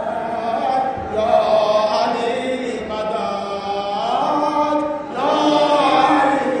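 A crowd of men chanting a devotional chant together, many voices at once. The pitch rises about four seconds in, and the chant swells louder just after five seconds.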